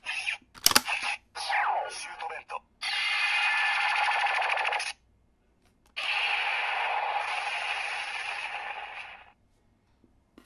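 Bandai CSM Drag Visor toy gauntlet playing its electronic sound effects through its small speaker once a card is loaded. There is a click, a short sharp blast, a falling swoosh, and then two long dense bursts of about two and three seconds, with voice calls among them.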